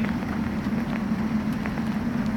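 A steady low mechanical hum with a rumble beneath it, running unchanged.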